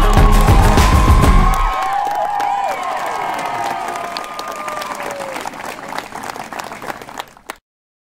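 Crowd of guests applauding and cheering over music. The heavy low bass stops about two seconds in, then everything fades out and cuts to silence just before the end.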